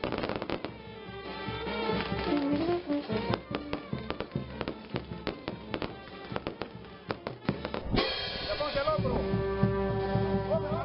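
Fireworks going off: a rapid, irregular run of sharp crackles and bangs, with music playing underneath. About eight seconds in, the crackling stops and the music carries on alone.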